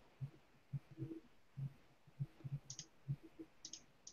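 Faint, irregular dull taps several times a second, with a few sharper clicks in pairs near the end: computer keyboard and mouse being used to search for something.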